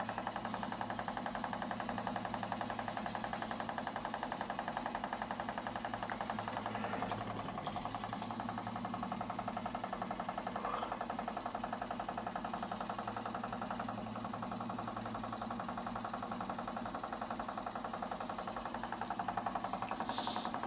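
Vibration-plate exercise machine running, a steady, rapid pulsing buzz.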